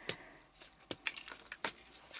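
Faint handling noise from small craft items being picked up and moved: three light, sharp clicks about three-quarters of a second apart, with soft rustling between them.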